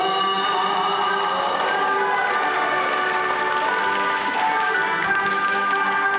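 Japanese kagura accompaniment music played live for a dance: held flute-like notes over steady percussion strikes.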